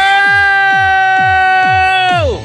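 A singer holding one long, steady note through a microphone over an amplified backing track with a fast, even electronic bass beat.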